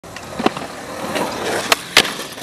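Skateboard wheels rolling over concrete, getting louder as the board comes closer, with a few light clacks and one loud, sharp clack at the very end as the board is popped up at the ramp's edge.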